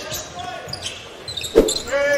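Arena crowd murmur with faint voices during a basketball game on a hardwood court, and one sharp thump of a basketball bouncing about one and a half seconds in.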